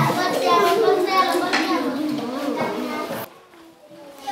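Several children reading aloud at the same time, their voices overlapping into a sing-song classroom babble. It cuts off abruptly a little after three seconds in.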